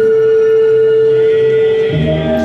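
Opera singer holding one long, steady high note that ends just before the end.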